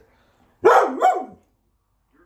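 A dog barking twice in quick succession, starting just over half a second in.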